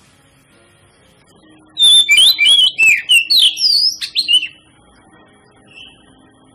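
Oriental magpie-robin singing a loud burst of quick, varied whistles and sharp sweeping notes, starting about two seconds in and lasting about three seconds.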